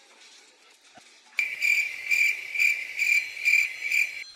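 Cricket chirping, starting about a second and a half in, at about two chirps a second over a faint hiss: a comic 'crickets' sound effect marking an awkward silence.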